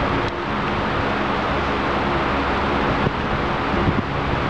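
Loud, steady rushing room noise with a low hum underneath and no voice.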